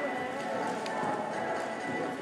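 Horse cantering on arena sand, its hoofbeats heard under a steady murmur of background voices in a reverberant indoor hall.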